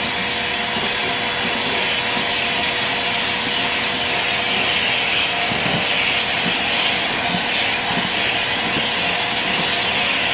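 A pet grooming dryer (blower) running steadily, a continuous airy hiss with a faint steady hum from its motor.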